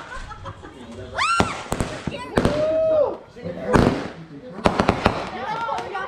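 Aerial consumer fireworks bursting overhead: a series of sharp bangs, the loudest a little past the middle, with a quick cluster of reports near the end. People's shouts rise and fall between the bangs.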